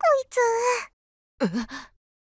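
Speech only: a soft, breathy spoken line ('cute, this guy'), then a short surprised 'eh?' about a second and a half in.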